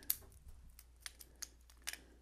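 Faint, irregular light clicks and taps, about seven in two seconds, as a wristwatch with a steel link bracelet is handled and fitted into a plastic watch-case holder. The loudest clicks come near the end.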